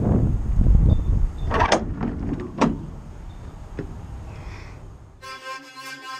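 Wind rumbling on the microphone, with a few sharp clicks from the camera being handled, fading out. About five seconds in, background music starts.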